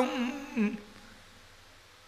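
A man's chanted sermon voice holding the last note of a phrase, wavering and falling in pitch, then dying away before the first second is out.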